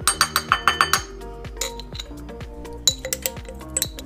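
A metal table knife clinking and scraping against a glass seasoning jar as the paste is scraped out into a bowl. There is a quick run of clinks in the first second and a few more scattered through the rest, over background music.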